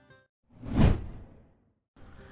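A single whoosh sound effect that swells and fades over about a second, marking the transition to a new segment.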